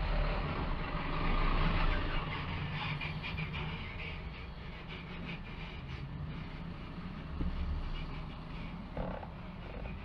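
Steady low mechanical hum, with a louder rushing noise over the first two seconds that fades away.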